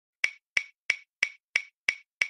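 Ticking sound effect: six sharp, evenly spaced ticks, about three a second, each with a short ring.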